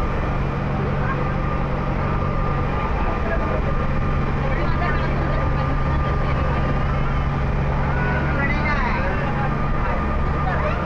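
Car ferry under way, its engine droning steadily with a constant low hum, and passengers talking in the background.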